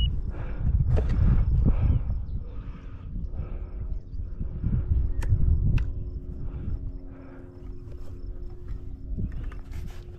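Wind rumbling on the microphone, with soft rustling steps in grass repeating about every half second to second, and two sharp clicks about five seconds in.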